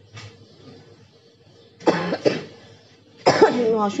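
A person coughing: two short coughs in quick succession about two seconds in.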